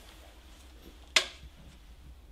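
A single sharp clack of a film clapperboard about a second in, over low room tone.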